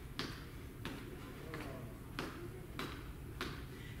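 Soft, regular taps of feet landing on the floor during switch kicks, about three every two seconds.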